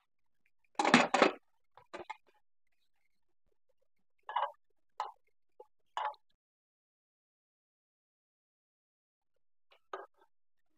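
An aluminium pressure cooker's lid being closed and locked, with a short metal clatter about a second in and a couple of small clicks. Then come three short scrapes of a plastic spatula against the cooker's pot as the potatoes are stirred.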